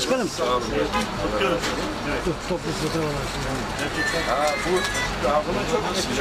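Men's voices talking indistinctly over a steady low rumble of street traffic.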